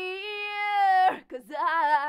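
An unaccompanied female vocal track, played through the EQ section of a PreSonus ADL 700, sings the long held word "hear". The note ends about a second in, and a new phrase starts soon after.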